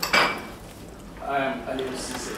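A sharp clink of a hard object at the very start, the loudest sound, then about a second later a brief stretch of a voice.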